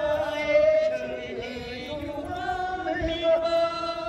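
A group of men and women singing a slow traditional dance song together in unison, drawing out long held notes that glide from one pitch to the next.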